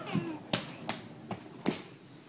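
A crawling baby's hands slapping a hardwood floor: four sharp taps, about one every half second.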